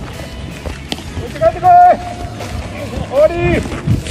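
Two long shouted calls from players on a baseball field. The first, about a second and a half in, is the loudest; the second rises into a held note near the end. A single sharp knock comes just before, about a second in.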